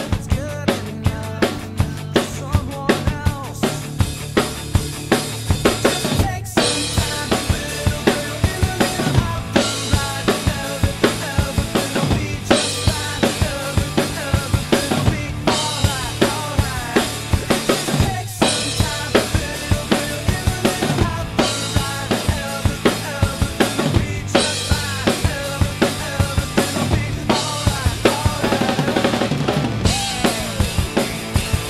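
Acoustic drum kit with Meinl, Sabian and Zildjian cymbals played live along to the recorded pop-punk song: fast kick and snare hits with crashing cymbals over the song's guitars. There are short breaks in the beat about every six seconds.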